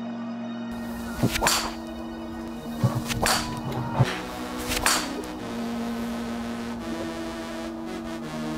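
Ben Sayers M8 driver being swung at a driving range: several sharp swishes and club-on-ball cracks, about one every second or two in the first five seconds, over steady background music.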